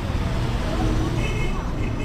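Street noise outdoors: a steady low rumble of road traffic, with a faint high tone in the second second.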